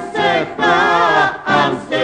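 Rebetiko song: sung phrases with a wavering, ornamented vocal line over instrumental accompaniment.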